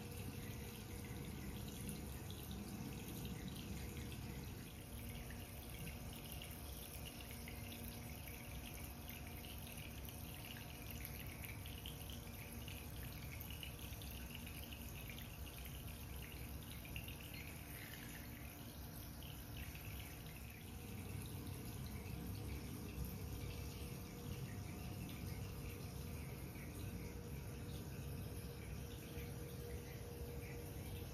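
Shallow water of a small artificial stream trickling and dripping steadily over epoxy-coated rock.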